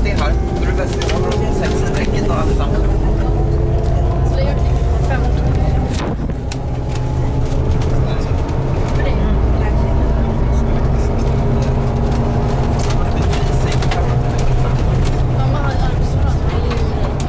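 Cabin noise of a moving airport coach bus: a steady low engine and road rumble, with a faint drivetrain whine that drifts slowly in pitch.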